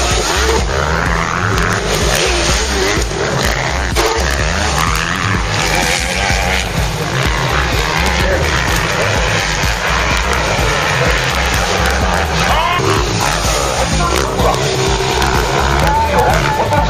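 Motocross dirt-bike engines revving as riders race along the track, their pitch rising and falling through the throttle and gear changes, with background music playing underneath.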